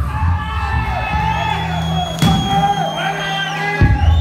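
A rock band playing live, the singer holding long shouted notes into the microphone over the bass and drums; each held note sags in pitch as it ends, and the low end drops out for a moment near the end.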